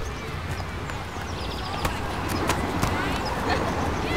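Outdoor ambience in a park: distant voices and a few scattered knocks over a steady low rumble.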